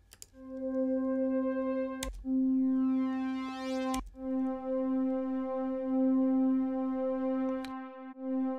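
Synth pad presets of Ableton's Wavetable instrument auditioned one after another, each sounding a single sustained note. The note is cut with a click and the next pad comes in about two seconds and four seconds in, with another click near the end.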